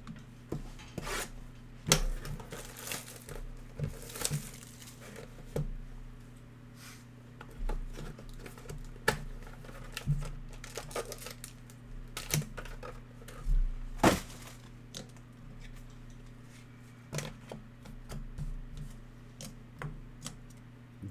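Hands tearing open a Panini Playbook football card box and its wrapping: cardboard ripping, plastic crinkling, and scattered sharp clicks and knocks of handling, the loudest about two seconds in and again near the middle. A steady low electrical hum runs underneath.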